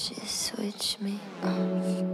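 A woman whispering close into a handheld microphone, her 's' sounds hissing sharply several times, over a soft held note from the band.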